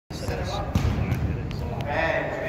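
Futsal ball knocking and thudding on a hard indoor court as it is played, several sharp hits in two seconds, echoing in a large hall.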